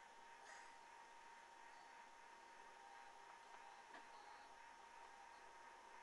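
Near silence: faint steady hiss with a thin steady tone, broken by a couple of soft clicks.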